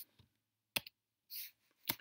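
Computer keyboard being typed on: a few separate sharp key clicks spaced out over the two seconds, with a short soft hiss between them.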